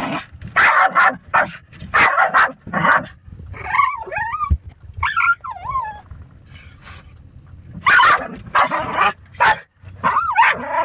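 A puppy barking in rapid bursts at the moving windshield wipers, breaking into high whines that waver up and down in pitch partway through, then barking again near the end.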